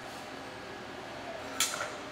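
Steady low kitchen background, then about one and a half seconds in a single sharp, ringing clink of a utensil against kitchenware as polenta is plated.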